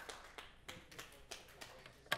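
Faint, scattered applause from a small audience: a few irregular claps, several a second.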